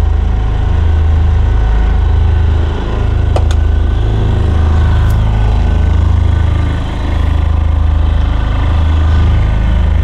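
Motorhome's onboard diesel generator running steadily, powering the air conditioning. It makes a deep, loud hum with a slight dip in level every few seconds.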